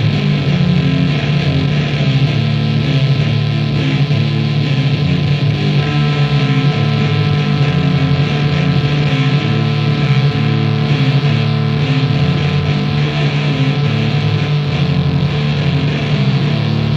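Sludge metal recording: heavily distorted, down-tuned guitar and bass playing a repeating riff, with a held higher note coming in about six seconds in.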